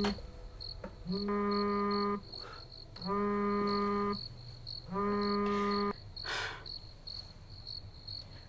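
Mobile phone vibrating against a hard bedside table for an incoming call: even buzzes about a second long, repeating every two seconds, three full buzzes before it stops about six seconds in. Faint high, regular chirping runs underneath.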